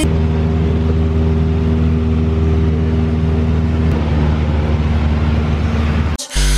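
Single-engine light aircraft's piston engine and propeller droning steadily in flight, heard from inside the cabin.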